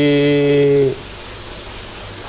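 A man's voice holding one flat, drawn-out hesitation vowel for about a second, then steady low background hiss.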